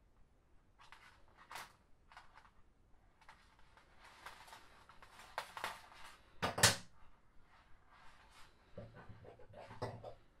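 Plastic lanyard (scoubidou) strings being handled and worked at a stitch: scattered soft rustles and small clicks, with one sharper knock about two-thirds of the way through.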